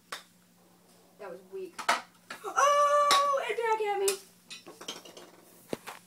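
A golf ball hits metal gym equipment with a sharp metallic clank about two seconds in, after a few lighter clicks. A long, excited shout follows.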